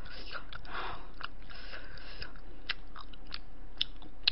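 A person chewing food close to the microphone: soft chewing with scattered sharp, wet mouth clicks.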